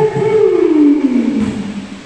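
One person's long, drawn-out call, held on one loud pitch and then sliding down as it fades near the end.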